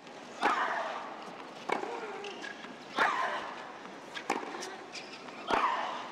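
Women's tennis rally on a hard court: five racket-on-ball strikes about 1.3 s apart, alternating louder and fainter as the ball goes back and forth. The louder strikes each come with a short vocal grunt from the hitter.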